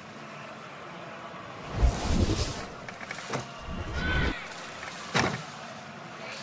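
A gymnast's feet landing on a balance beam: two heavy, low thuds about two seconds apart, with a couple of sharp slaps on the beam in between and after.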